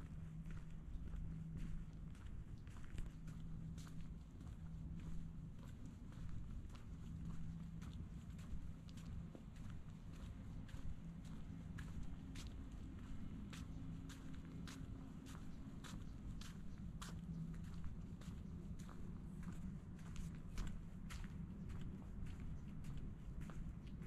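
Footsteps walking on brick pavers, about two steps a second, over a steady low hum.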